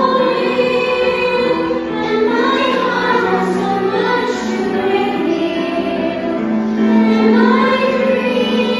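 A young girl singing a solo song, with sustained notes that move through a melody, over musical accompaniment.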